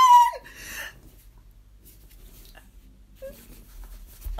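A woman's short, high squeal of delight that falls in pitch and trails off into a breathy gasp, followed by quiet.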